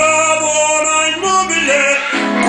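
A man singing mock-operatic long held notes into a stage microphone, heard through the PA. The first note is held, then his pitch changes about a second and a quarter in.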